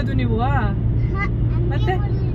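Steady low rumble of a car's cabin noise as it drives, with short bits of voice over it, one rising and falling in pitch about half a second in.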